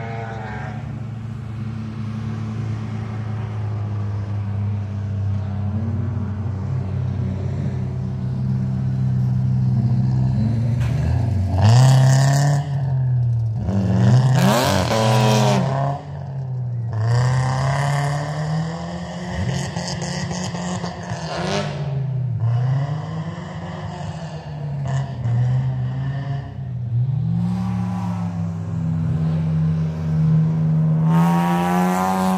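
Race car engines lapping a dirt circuit, revving hard, with the pitch climbing and dropping again and again as the cars accelerate and lift for the corners. The sound is loudest about twelve seconds in and again a couple of seconds later, with sweeping rises as a car passes close.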